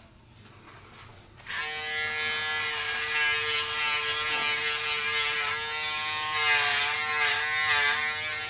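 Braun Series 5 5018s electric foil shaver switched on about a second and a half in, then running with a steady buzz. Its pitch wavers slightly as it is pressed along the neck.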